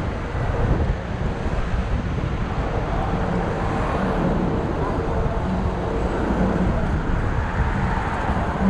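Road traffic heard from a moving bicycle, with wind buffeting the camera microphone throughout and car engines running close by.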